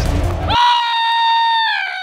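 Dramatic music cuts off abruptly about half a second in. A man then lets out a long, high-pitched scream like a little girl's, held level before sagging slightly in pitch near the end.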